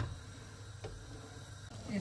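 Wooden spatula stirring a thick creamy curry in a steel pot, faint, with one light knock of the spatula against the pot a little under a second in, over a steady low hum.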